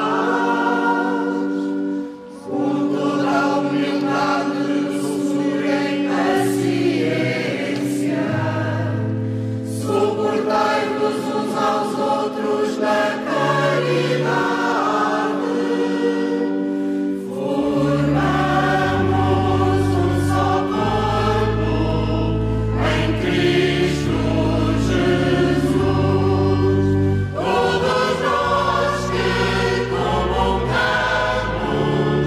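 Church choir singing a hymn in long, held chords, with a short pause between phrases about two seconds in. Deeper bass notes join about two thirds of the way through.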